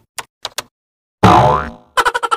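Edited-in sound effects: two or three short typewriter-style clicks, then just past a second in a loud cartoon boing that wobbles in pitch and dies away over about half a second.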